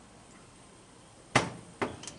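Metal door of a Masterbuilt propane smoker being pushed shut: one sharp clack near the end, followed by a smaller click as it latches, after a faint steady hiss.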